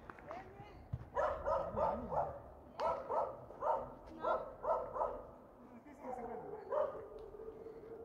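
A dog barking: about ten short barks in quick clusters over some four seconds, then a longer drawn-out call near the end.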